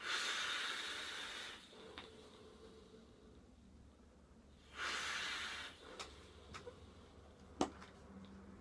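A long draw on a sub-ohm vape: air hisses through the atomizer for about a second and a half, then about five seconds in comes a shorter, forceful exhale of vapour. A few light clicks follow, one sharp click near the end the loudest of them.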